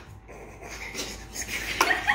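Faint plastic clicks and rattles from a Pie Face game as its handle is turned, with a short burst of laughter starting near the end.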